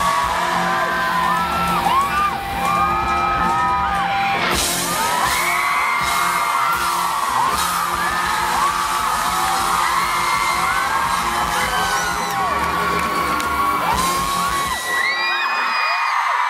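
Live pop-rock band playing the close of a song, heard from inside the audience, under constant shrill screaming and whooping from fans close by. There is a loud crash about four and a half seconds in, and near the end the band's low end drops out, leaving mostly the screams.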